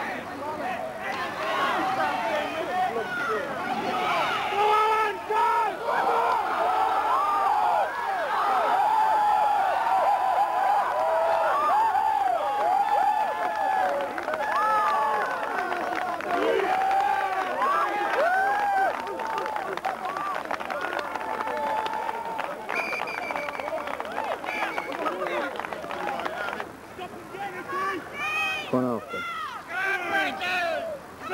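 Many voices shouting and cheering at once on the sideline during a long run that ends in a touchdown. The shouting falls away a few seconds before the end.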